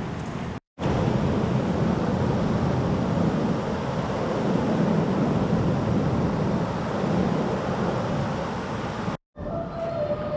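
The Terek, a mountain river running full, rushing over a weir: a loud, steady noise of water. It starts abruptly just under a second in and breaks off just before the end.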